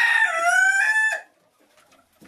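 A rooster crowing: one long crow that ends a little over a second in, its pitch sliding down toward the end.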